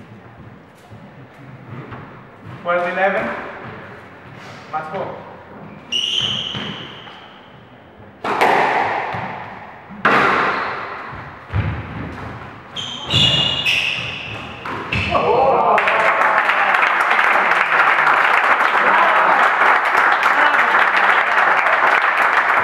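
A squash rally in an echoing court: the ball hitting racquets and walls every second or two, with shoes squeaking on the wooden floor. About two-thirds of the way in the rally ends and spectators break into steady applause.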